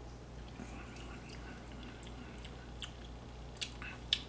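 Faint mouth sounds of a shot of tequila being sipped and tasted, with scattered small ticks. There is a sharper tap near the end as the shot glass is set back down on its coaster.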